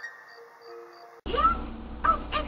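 Children's TV music with a rising run of notes, cut off abruptly a little over a second in. A low hum and short high calls that rise and fall in pitch follow.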